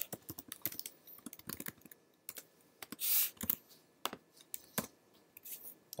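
Typing on a computer keyboard: an irregular run of key clicks as a line of code is entered and the script is run. There is a brief, louder hiss about halfway through.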